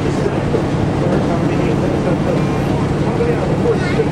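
Steady drone of the 1958 Silver Eagle coach's engine and road noise heard from inside the cabin while it is driving, with an even low hum that does not change.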